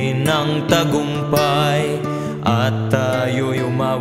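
A Tagalog devotional song: one voice sings a held, wavering melodic line over a steady instrumental backing.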